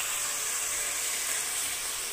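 Onion, peas and moringa leaves sizzling in oil in a pan, with freshly added chopped tomato: a steady hiss.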